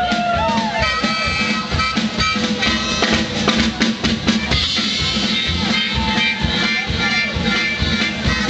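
Live rockabilly band playing: upright bass, acoustic guitar and drum kit, with a harmonica bending notes in the first second. There is a run of sharp drum hits around the middle.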